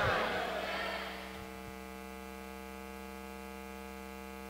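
Steady electrical mains hum with a buzzy row of overtones, left in the gap between phrases; during the first second the echo of a shouted voice dies away over it.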